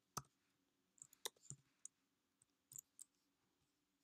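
A dozen or so scattered clicks of a computer keyboard and mouse, sharp and short with near silence between them: a single click, then a cluster about a second in, and a few more near the three-second mark.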